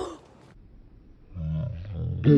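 A person's voice making a low, drawn-out growling sound, starting a little over a second in.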